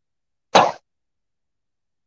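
A single short cough, then silence.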